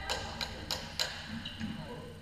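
Floorball sticks clacking on the plastic ball in play: four sharp clicks about a third of a second apart, then two fainter ones, over voices in the hall.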